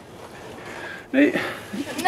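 Speech: a voice says "No" with laughter, starting about a second in; before that only faint background noise.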